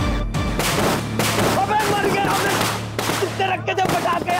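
A string of firecrackers bursting in rapid irregular cracks. From about a second and a half in, a young man cries out over them.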